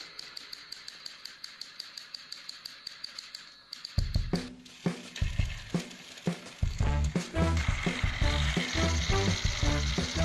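Battery-powered plastic toy train running on its track, its drive clicking evenly about six times a second. Background music with a steady beat comes in about four seconds in.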